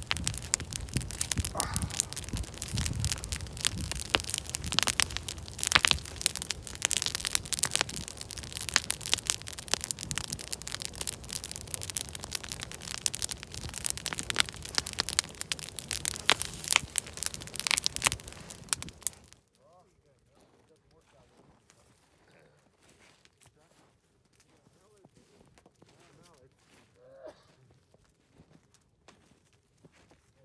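Wood fire crackling and popping loudly, with many sharp cracks, as a plucked duck is held in the flames to singe off the last of its feathers. The sound cuts off suddenly about two-thirds of the way in, leaving near silence.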